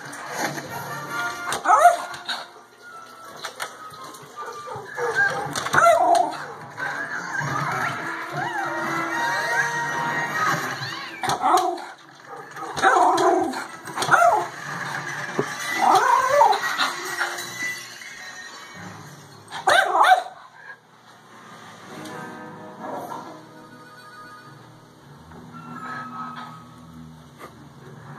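A dog barking several times in loud, short bursts over music playing from a television.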